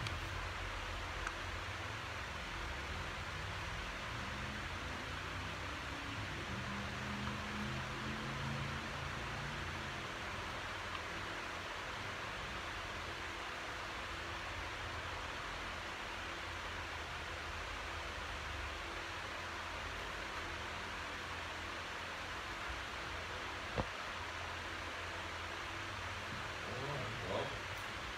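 Steady hiss of room tone with a low hum underneath, and one sharp click a couple of seconds before the end.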